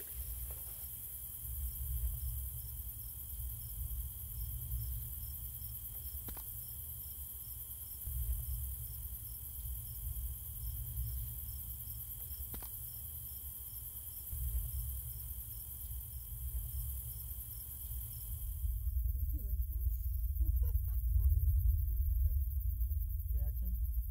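Night ambience of crickets chirping in an even rhythm, about two to three chirps a second, with a steady high insect trill over a low rumble and two faint clicks. About 19 seconds in the crickets cut out, leaving a louder low rumble with faint scattered tones.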